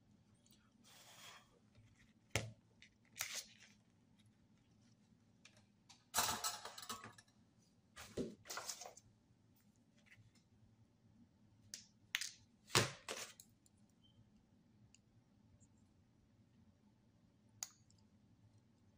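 Faint, scattered clicks, taps and short rustles of a circuit board, its wires and small tools being handled on a cardboard work surface, about ten separate sounds with a longer rustle about six seconds in.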